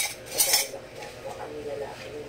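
Dishes and cutlery handled in a sink while being washed: a sharp clink right at the start and a brief clatter about half a second in, then quieter handling. Faint television voices sound in the background.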